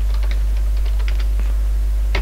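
Typing on a computer keyboard: a quick run of faint keystroke clicks as a word is typed, over a steady low hum.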